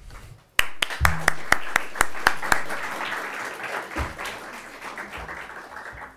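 Audience applauding. It starts suddenly just over half a second in with loud individual claps, then becomes a dense spread of clapping that slowly dies away.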